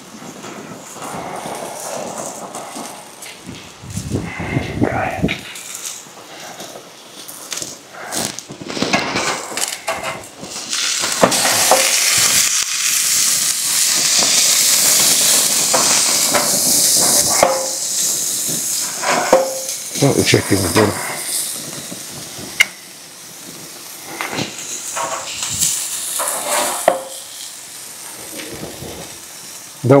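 Sausages and burgers sizzling on a gas barbecue grill. The sizzle swells loudest for several seconds about a third of the way in, with scattered clicks throughout.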